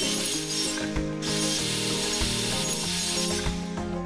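Metal-cutting chop saw cutting steel stock: a harsh, hissing grind with a brief break about a second in, stopping about three and a half seconds in. Electronic background music plays underneath.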